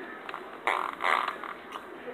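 Two short, breathy noises from a child's mouth, about two-thirds of a second and one second in.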